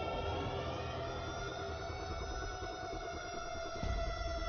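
Film soundtrack sound design: several held, siren-like tones sounding together, the upper ones rising slowly at first and then holding steady, over a low rumble, with a deep hit near the end.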